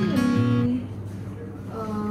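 Background music with acoustic guitar strumming.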